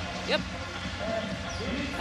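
Basketball arena ambience: a steady crowd murmur, after a brief spoken word.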